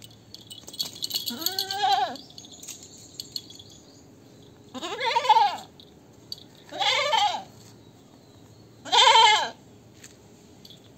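Goats bleating: four separate bleats, each under a second, that rise and fall in pitch, the later ones louder. A scratchy high noise runs under the first two seconds.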